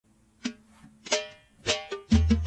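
Oud playing a slow opening phrase of four single plucked notes, each ringing and fading before the next, with the last two close together near the end.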